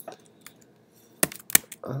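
Computer keyboard keystrokes: a couple of faint taps, then two sharp key presses about a third of a second apart, the keyboard shortcuts that save the file and bring up the app switcher.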